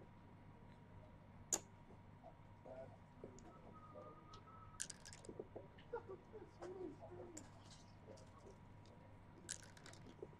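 Faint clicks of backgammon play: a single click early on, a short clatter of dice landing on the board about five seconds in, and checkers clicking near the end.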